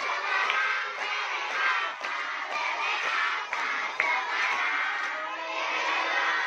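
A large group of children shouting together, many high voices at once without a break.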